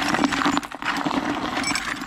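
Rusty nails and screws being pulled off a magnet and dropped onto a heap of nails in a bucket. The small metal pieces clink and rattle in quick succession, over a steady low hum.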